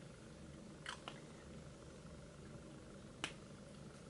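Lips pressing together and smacking apart to work in freshly applied lipstick: two soft smacks about a second in and another just after three seconds, over a low steady room hum.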